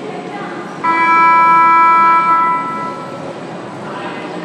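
An arena signal horn or buzzer sounds one steady tone starting about a second in, lasting about two seconds before fading, over the steady hum of the indoor arena.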